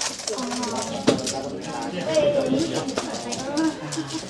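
A 3x3x3 speedcube clicking and clattering as it is turned rapidly during a timed solve, with voices in the room behind it.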